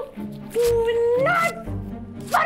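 A woman sobbing aloud in a long wavering wail that rises in pitch at its end, over soft background music.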